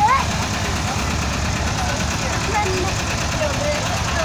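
Volkswagen Kombi van's engine idling steadily, with faint chatter of voices over it.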